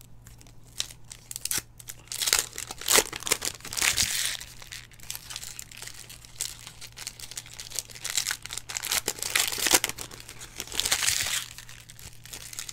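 Foil wrapper of a Panini football card pack crinkling and tearing in the hands as the pack is opened, in irregular bursts, loudest a couple of seconds in and again near the end.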